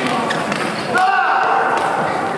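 Players' voices and laughter echoing in an indoor badminton hall, with a few sharp taps and squeaks from the court; the loudest is about a second in.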